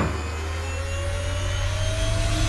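Royal Enfield Himalayan's single-cylinder engine running at highway speed: a steady low drone with a thin whine that rises slowly in pitch as the bike gathers speed.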